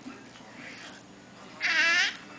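A short, high-pitched squeal with a wavering pitch, about a second and a half in, over faint room noise.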